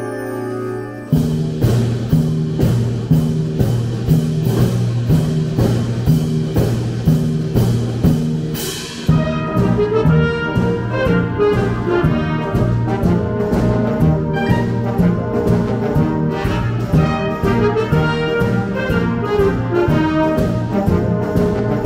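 A military wind band playing a Disney medley: a held chord, then about a second in the full band comes in with brass over a steady beat of about two strokes a second. A cymbal swells just before the middle and the band moves into a new section with moving melody lines over the beat.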